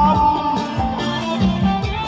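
Khmer cha-cha-cha (Rom Cha Cha Cha) dance music from a live band: a held lead melody over a steady, repeating bass line.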